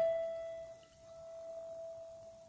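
A single grand piano note held and ringing on, fading slowly, after a run of notes has stopped.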